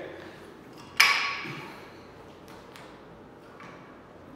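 A single sharp metallic clank with a short ringing decay about a second in, as a plate-loaded EZ curl bar is lifted from the floor. A few faint clinks from the bar and plates follow.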